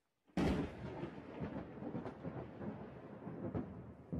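Thunder from a close lightning strike: a sudden loud crack about a third of a second in, then a rolling rumble with a few sharper cracks in it.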